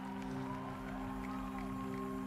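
Sustained keyboard chord held as a steady low drone between sung phrases, with faint wavering higher tones drifting above it.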